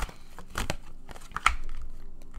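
A deck of tarot cards being shuffled by hand, with irregular sharp snaps of the cards over a low rustle.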